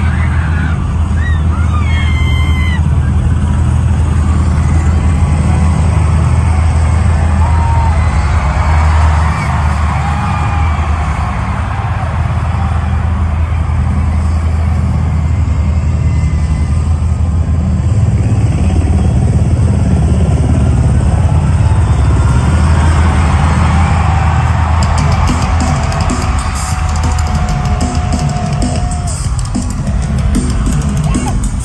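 Loud, steady low rumble of a show intro through an arena sound system, with crowd screams and whistles rising over it. Near the end a fast ticking beat comes in as the music starts.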